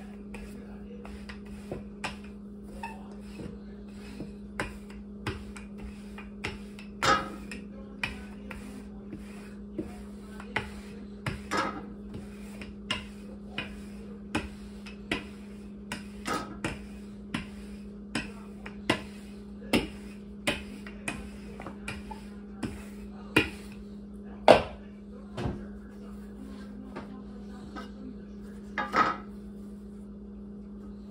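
Wooden rolling pin rolling out pie dough on a wooden tabletop: frequent irregular knocks and clacks from the pin against the table, about one or two a second, with a few louder knocks, the loudest near the end.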